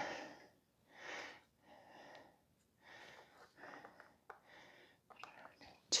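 Quiet breaths, roughly once a second, while diced green tomatoes are scooped by hand into a measuring cup. A few small clicks come near the end.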